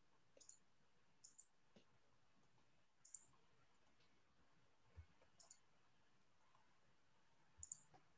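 Near silence broken by faint, sharp clicks, about one every second or two, some in quick pairs. The loudest come about three seconds in and near the end.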